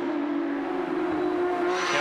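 Porsche 911 GT3 Cup race car's flat-six engine at high, nearly steady revs, its pitch sagging slightly. Near the end it cuts to a different, closer engine sound.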